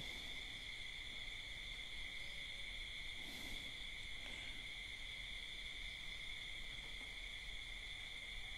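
A faint, steady, high-pitched background drone in two even tones, continuing unchanged through a pause in the talk.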